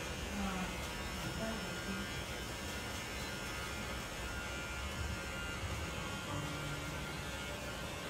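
Electric hair clippers buzzing steadily as they shave hair off a scalp.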